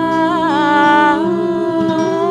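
Two women's voices singing long, held wordless notes with vibrato, the harmony shifting to new notes a little past a second in, over soft acoustic guitar.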